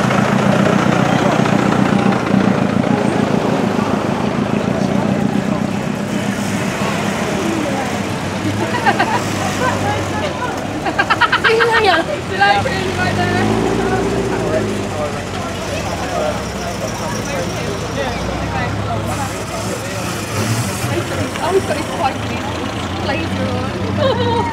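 Classic cars driving slowly past one after another, engines running, with spectators chatting. One engine note rises and falls about halfway through.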